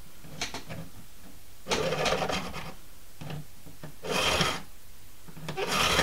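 A hand file cutting into a cow pastern bone, drawn in slow strokes to cut through the blank: three loud strokes spaced a little under two seconds apart, with lighter strokes between them.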